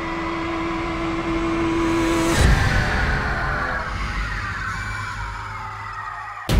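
Horror-trailer sound design: a swelling noise riser over a held tone that builds to a deep boom about two and a half seconds in, followed by a falling sweep that slowly fades.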